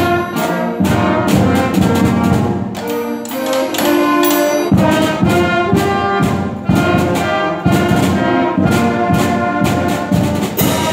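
A beginner school concert band playing a piece: brass and wind instruments sounding sustained notes, with bass drum and snare drum strokes marking the beat.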